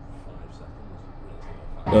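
Faint low background rumble with a distant murmur of voices, then a man starts speaking close to the microphone just before the end.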